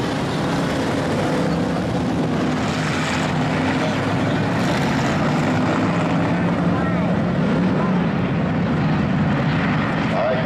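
A pack of IMCA Hobby Stock race cars' V8 engines running together at low speed, a steady drone as the field rolls around the dirt track in formation before the start.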